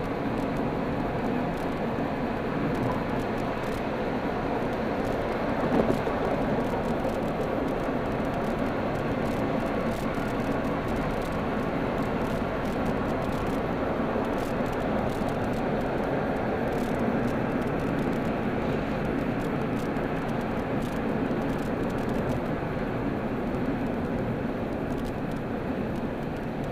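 Steady road and engine noise of a moving car, heard from inside the cabin, with a brief knock about six seconds in.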